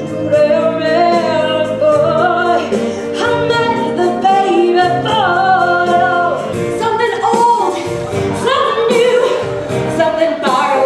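Voices singing a 1960s-style pop song over instrumental accompaniment, held notes sliding between pitches over a steady bass and sustained chords.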